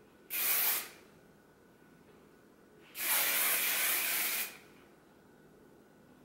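Hairspray sprayed onto hair in two hissing bursts: a short one right at the start and a longer one of about a second and a half midway through.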